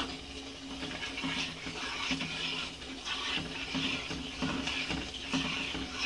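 Metal spoon stirring milk and melted chocolate in a steel bowl, with soft scraping strokes about once a second over a steady low hum.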